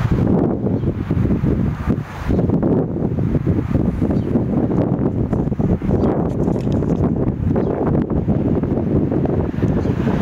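Wind buffeting the microphone: a loud, uneven low rumble with a brief dip about two seconds in.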